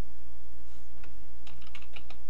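Computer keyboard being typed on: about five quick keystrokes in the second half, entering a short command and pressing Enter. A steady low hum runs underneath.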